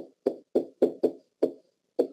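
Pen tapping and knocking against an interactive whiteboard while writing a word: a quick series of about seven sharp, hollow knocks, roughly three to four a second, one for each stroke.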